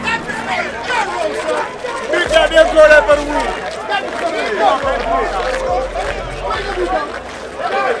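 Crowd chatter: many voices talking over one another at once, with no single clear speaker.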